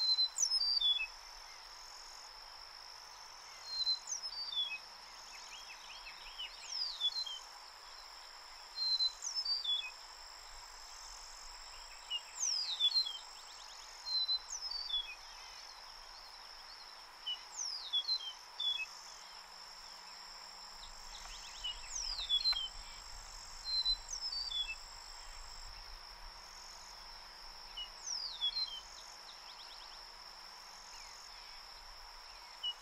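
Eastern meadowlark singing its normal song over and over: clear whistles sliding down in pitch, one song every two to four seconds, about ten in all. A steady high insect drone runs underneath.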